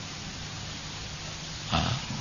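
Steady background hiss of an old lecture recording, with a man's short hesitant 'uh' near the end.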